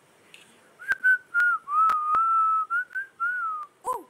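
A woman whistling a few wavering notes to herself for about three seconds, starting about a second in, with a few short clicks alongside.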